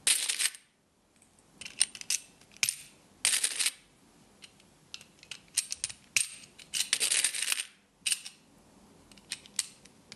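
Typing on a keyboard: irregular runs of sharp key clicks in bursts, with short pauses between them.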